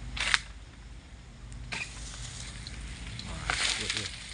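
Oil palm fronds being cut and pulled down with a long-poled harvesting sickle: a short sharp scrape at the start, then a long rustle of fronds that swells near the end.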